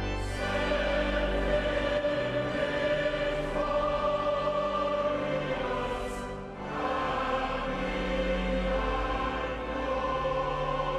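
Choir singing slow, held chords in a large, echoing stone chapel, the harmony shifting every second or two, with a brief softening about six seconds in.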